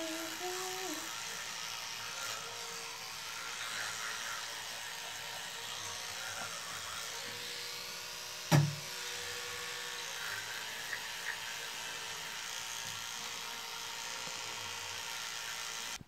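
Electric toothbrush running steadily while brushing teeth. A single sharp knock about halfway through.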